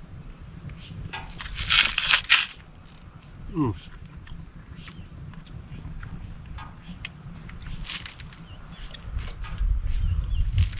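A person eating pan-fried fish fillet, with a cluster of loud crunchy bites about two seconds in, then quieter, scattered chewing clicks.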